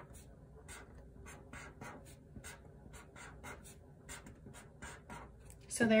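Felt-tip marker drawing on paper: a quick run of short strokes, about three to four a second, as small squares are drawn.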